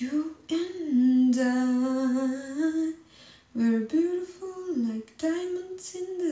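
A woman singing a wordless tune with no accompaniment, in three phrases of long held notes that step up and down in pitch.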